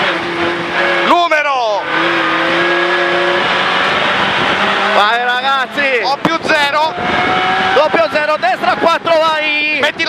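Renault Clio N3 rally car's four-cylinder engine heard from inside the cabin under track driving, running at fairly steady revs with a quick drop in pitch about a second in and a slow rise around seven seconds, with raised voices over it in the second half.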